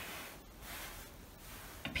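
Faint rustling of hands smoothing a piece of coarse cloth laid over a sheet.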